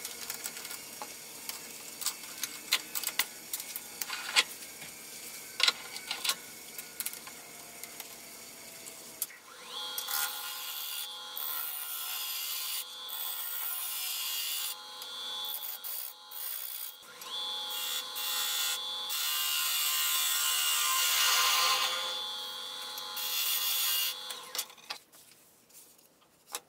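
Wood lathe running with a steady whine while a gouge cuts into a spinning wooden blank, in several passes with short pauses between them. Before it, scattered clicks and knocks of a metal chuck being worked by hand.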